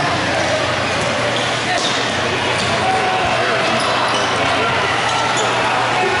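Futsal game on a wooden gym court: many voices of players and spectators calling out in an echoing hall, with the ball being kicked and shoes squeaking on the floor a few times.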